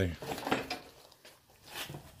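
A few light knocks and clicks in a garage, with a quiet stretch in the middle.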